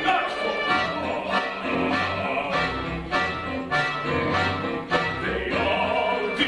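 Small pit-style ensemble of strings and winds, played on stage by the cast, plays a driving passage of the score. Accented chords land about every 0.6 s over a low bass line.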